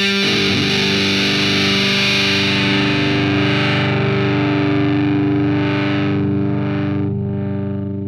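Music: a distorted electric guitar chord with effects, struck at the start and left to ring as the song's final chord. Its brightness fades over the last few seconds as it starts to die away.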